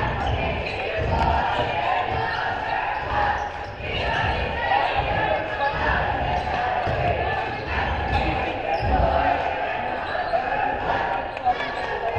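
A basketball bouncing on a hardwood gym floor in irregular thuds as it is dribbled and played, over the steady, indistinct voices of players and spectators in the gymnasium.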